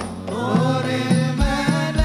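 Sholawat sung live: male and boy voices chanting an Arabic devotional melody together, over drums whose low strokes drop in pitch as they ring, falling about every half to one and a half seconds.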